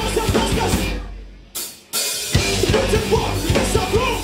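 Rock band playing live and loud, with drum kit and electric guitar. About a second in the band stops dead, one short hit sounds in the gap, and the full band crashes back in at about two seconds.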